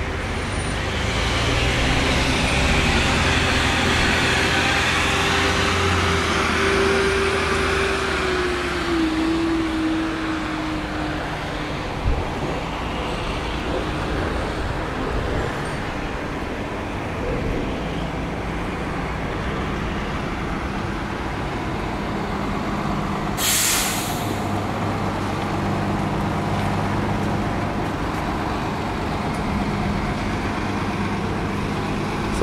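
Transit buses running at a bus loading area, their diesel engines droning steadily. A pitched engine whine slides down in pitch about eight seconds in, and a short, sharp hiss of air brakes comes about two-thirds of the way through.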